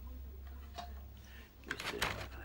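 Handling noise of a wooden long-neck bağlama being turned over in the hands: a faint knock a little under a second in and a few rubs and clicks near the end, over a steady low hum.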